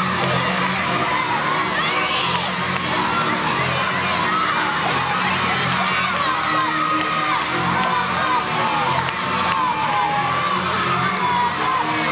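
A crowd of children shouting and cheering continuously, with music playing underneath.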